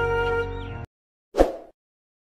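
Gentle background music with held tones stops abruptly just under a second in. After a brief silence comes a single short pop sound effect as a subscribe-button graphic pops up.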